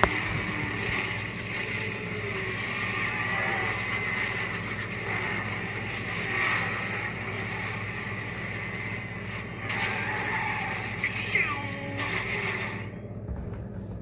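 Television broadcast sound replayed through a speaker: voices mixed with music over a steady hum, ending about a second before the end.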